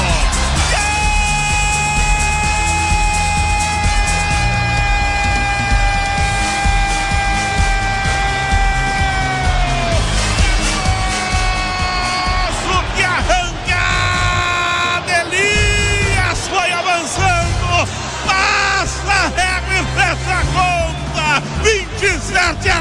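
A Brazilian radio narrator's drawn-out goal cry, one long held shout of about nine seconds that sags in pitch as it ends. It is followed by the station's goal jingle: music with sung and shouted voices.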